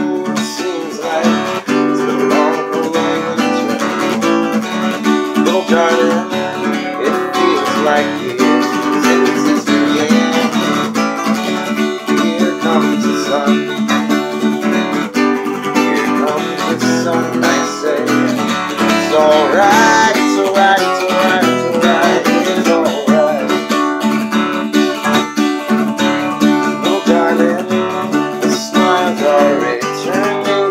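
Steel-string acoustic guitar strummed briskly and steadily in a driving rhythm, with a man's voice singing along over it.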